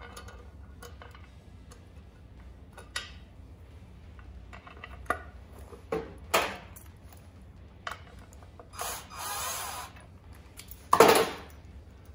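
Metal parts being handled: light knocks and taps as an LS engine's front timing cover is fitted against the block. About nine seconds in there is a second of hissing scrape, then a loud metallic clatter about eleven seconds in.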